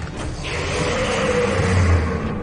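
Sound effects for a giant animated robot: a hiss comes in about half a second in, then a deep rumble swells to its loudest at the end.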